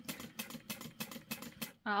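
Juki industrial sewing machine stitching slowly through vinyl and fabric, a quick run of light clicks about six a second, a little uneven.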